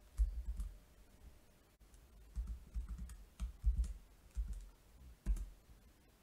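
Computer keyboard keystrokes and clicks: about a dozen soft, irregular strokes, each with a low thud, as text is copied, switched between windows and pasted.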